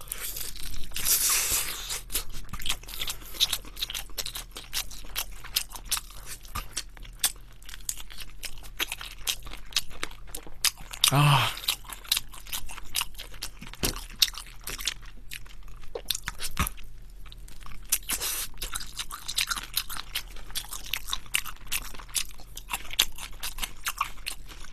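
Close-miked chewing of sauced Korean fried chicken: a long run of crisp crunches from the fried coating, with wet mouth sounds between bites.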